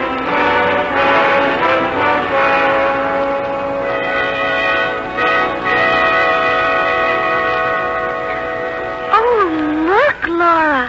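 Orchestral bridge music with brass, playing held chords that mark a scene change in the radio drama. About nine seconds in, the music gives way to a voice with rising and falling pitch.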